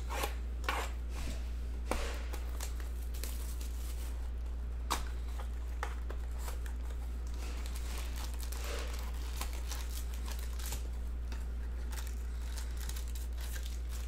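Plastic shrink wrap on a trading-card box being slit and torn off, with crinkling of the wrapper and the handling of the cardboard box and foil packs. The sharpest tearing comes in the first two seconds, with a single snap about five seconds in and fainter crinkling after, over a steady low hum.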